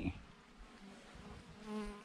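A honeybee buzzing close to the microphone: a faint hum that grows louder near the end.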